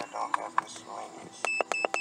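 Scan-tool keypad beeps: a quick run of short, high, identical beeps starting about a second and a half in, one for each button press as the MaxiCheck's function menu is scrolled.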